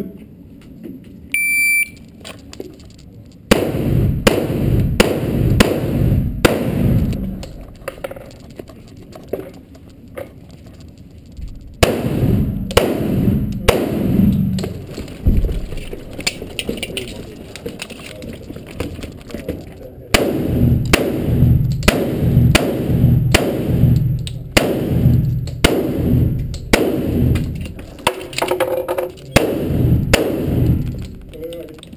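A shot timer's electronic start beep about a second and a half in, then strings of pistol shots from a 1911 fired in quick succession, ringing in an indoor range, with quieter pauses between the strings.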